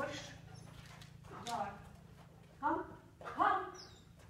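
A dog barking during an agility run: four short barks, the last two close together.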